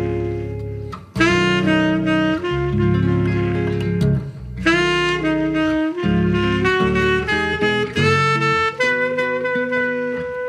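Tenor saxophone playing a slow jazz ballad melody over guitar chords, with short pauses between phrases about a second and about four seconds in.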